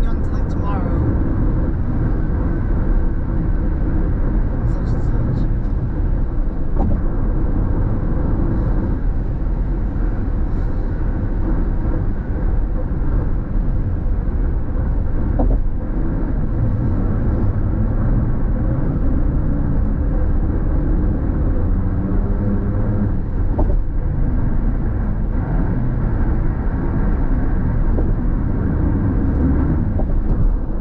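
Steady road noise inside a car cabin at freeway speed: a low rumble of tyres and engine that holds even throughout.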